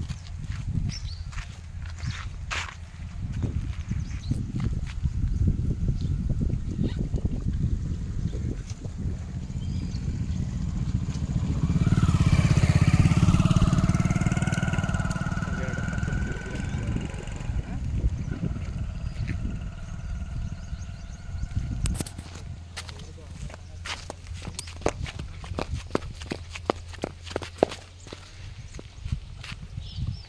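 A motorcycle passes on the road, growing loud and peaking about twelve to fourteen seconds in before fading, over a steady rumble of wind on the microphone. Near the end come a series of sharp clicks from footsteps.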